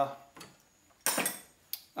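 A short metallic clatter about a second in, followed by a sharp click: small metal parts or tools being handled.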